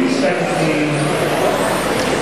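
Several electric RC touring cars of the 10.5 rubber-tyre class, with 10.5-turn brushless motors, racing on an indoor carpet track; the sound of the passing cars holds steady, with voices underneath.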